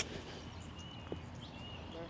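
A wedge chip striking the golf ball right at the very start, then quiet open-air background with a few faint high bird chirps and a small click about a second in.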